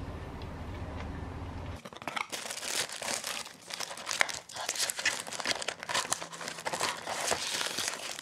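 A low steady rumble for about the first two seconds, then dense, continuous crinkling and rustling of paper and plastic packaging as a box of cosmetics is unpacked by hand.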